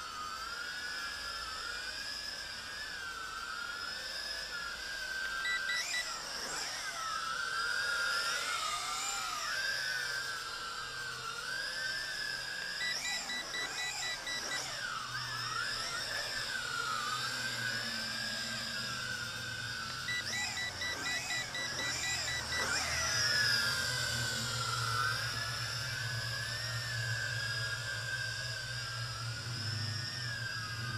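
JJRC X6 quadcopter's small motors and propellers whining, the pitch wavering up and down as the throttle changes. Three runs of short, rapid electronic beeps from the handheld transmitter come about 5, 13 and 20 seconds in, the last two runs longer.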